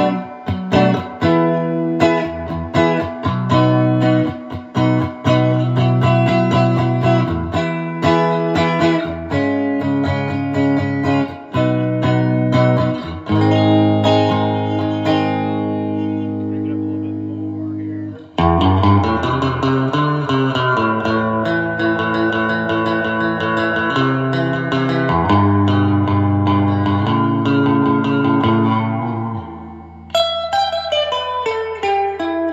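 Electric guitar played clean with reverb through a Tusc JT450 amplifier and 4×12 Fane-loaded cabinet, recorded on a phone microphone; chords and notes ring out steadily. The playing breaks off briefly about 18 seconds in, then resumes with longer, sustained ringing chords.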